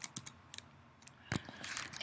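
Typing on a computer keyboard: a scatter of soft key clicks, with one louder keystroke a little past the middle.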